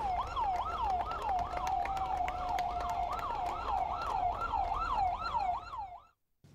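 Ambulance siren yelping: a rising and falling tone repeated about three times a second, held on one steady note for about a second midway, over a low rumble. It cuts off abruptly at the end.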